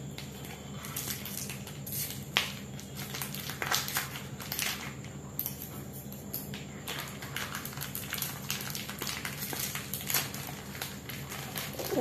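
Plastic Oreo biscuit packet crinkling and rustling in irregular bursts as it is handled and opened.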